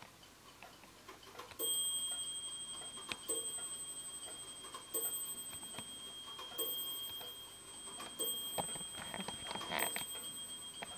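Winterhalder & Hofmeier double-fusee regulator wall clock striking the hour. The ringing strokes come about every 1.7 seconds, six of them from about a second and a half in, each note hanging on and fading. Before the first stroke only the faint tick of the movement is heard.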